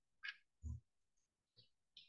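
Near silence, broken by two brief faint sounds: a short hiss about a quarter of a second in and a short low sound a little before the middle.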